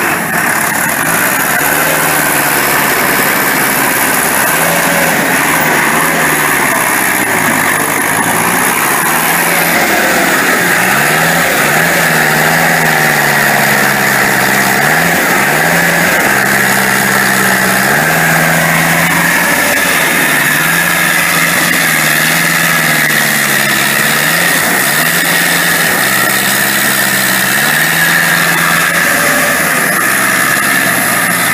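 Engine of a self-propelled pistachio shaker-catcher harvester running loud and steady, its pitch stepping up and down every few seconds.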